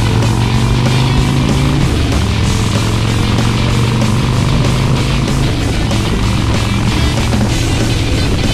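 Background music playing over a 2005 Harley-Davidson Heritage Softail's V-twin with Vance & Hines exhaust, running steadily at highway cruise.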